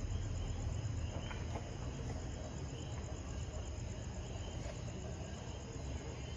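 Steady high trilling of night insects, with a low background rumble underneath.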